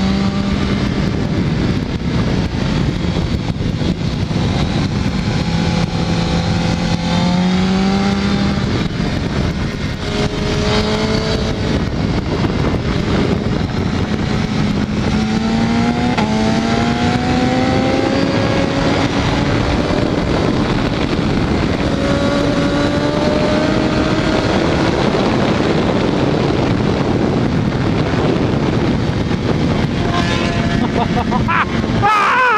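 BMW HP4's inline-four engine on board at track speed, its pitch climbing again and again as it pulls through the gears and dropping at each shift, under a heavy rush of wind and road noise.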